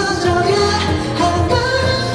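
Amplified K-pop song: a man singing into a handheld microphone over a pop backing track with a steady bass beat.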